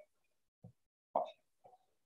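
A pause in a man's speech, silent apart from short, soft sounds from his mouth or voice: a faint low one about half a second in and a louder one just after a second.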